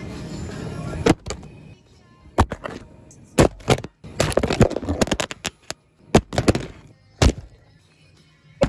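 A string of sharp knocks and clicks at irregular spacing, in places several a second, over a noisy background that drops out briefly twice.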